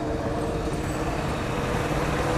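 Street traffic noise with a steady engine hum that fades out about a second and a half in.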